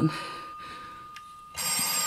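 Telephone bell ringing: one ring dies away, and the next ring starts about one and a half seconds in.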